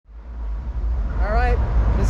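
Fade-in from silence to a low steady rumble, with a person's voice speaking briefly about a second and a half in.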